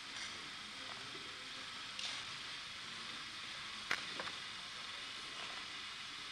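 Steady hiss of an old film soundtrack, with a few short, sharp clicks: one about two seconds in and two close together around four seconds in.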